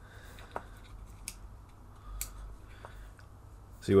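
Small pickup magnets clicking as they are flipped over and set into a wooden pickup housing: about four faint, sharp clicks spread out over a low steady hum.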